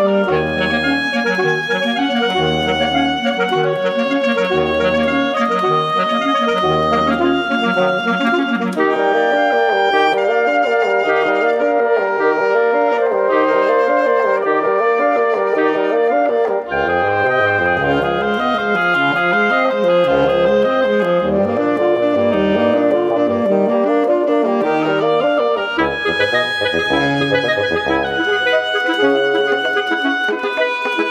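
A reed quartet of alto saxophone, oboe, clarinet and bassoon plays a contemporary chamber piece, with several lines moving over one another. Low notes repeat about once a second through the first few seconds.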